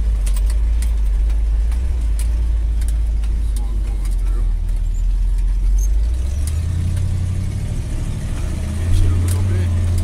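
1965 Chevrolet dually pickup's engine running as the truck drives over a rough dirt track, heard from inside the cab: a steady low rumble whose pitch steps up about six and a half seconds in, with scattered clicks and rattles.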